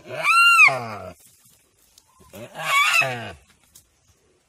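A deer calling out in distress twice, loud cries about a second long that rise in pitch and then fall away, as it is eaten alive by a Komodo dragon.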